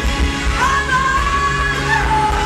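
Live pop band performing, with a singing voice holding one long, slightly wavering note that starts about half a second in, over electric bass and the rest of the band.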